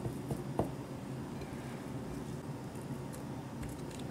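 A few faint clicks and soft wet handling in the first second as pieces of raw flounder are set into a glass dish, over a steady low hum.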